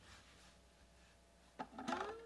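Near silence, then about a second and a half in, a few faint plucked notes begin on a nylon-string Mustang classic guitar whose bridge is broken.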